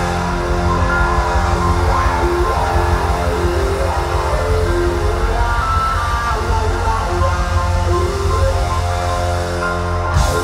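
A live rock band playing loud and full: electric guitars, bass and drums in a heavy closing jam.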